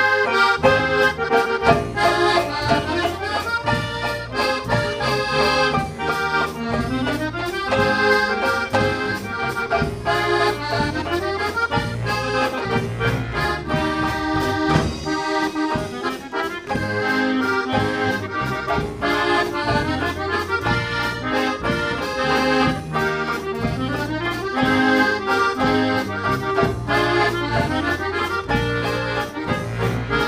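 An accordion-led polka band playing a waltz, with a steady bass line under the accordion melody.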